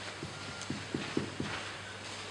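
Hurried footsteps on a stage floor: about six short thuds in little more than a second, over a steady low hum in the hall.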